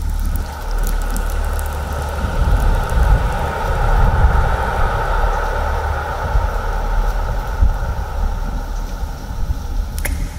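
Ambient sleep-music soundscape: a deep, steady low rumble under a band of even noise that comes in about half a second in and fades just before the end.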